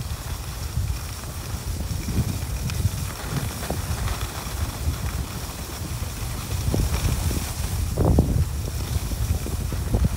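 Wind rumbling on the microphone of a camera carried downhill on skis, with the skis sliding and scraping on packed snow. It swells louder about eight seconds in.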